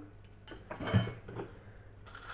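A fork and spoon clinking as they are handled and packed: a few light clinks, the loudest about a second in.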